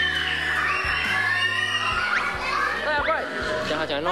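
Music playing under many children's voices talking and calling out over one another, with a few short high rising calls about three seconds in.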